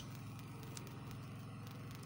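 Steady low background hum, with a single faint tick about three quarters of a second in.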